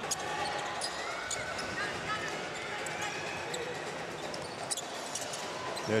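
Court sound of a live basketball game in a gym: a steady crowd hubbub with scattered sharp knocks of a basketball bouncing on the hardwood floor.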